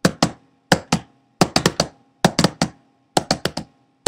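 Sharp taps or clicks in quick clusters of two to four, a cluster about every three-quarters of a second, over a faint steady hum.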